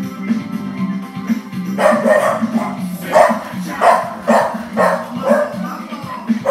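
Upbeat music playing, joined about two seconds in by a run of dog barks, about two a second, louder than the music.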